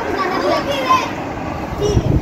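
A child's voice pleading "please, please, please", with children talking outdoors.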